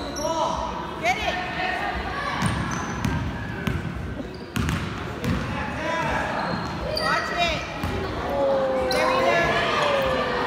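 Basketball game on a hardwood gym floor: the ball bouncing, sneakers squeaking in short chirps, and players and spectators calling out, with a longer held shout near the end.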